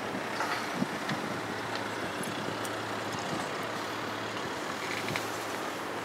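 Steady low hum under wind noise on the microphone, with a few faint clicks about a second in and again near the end.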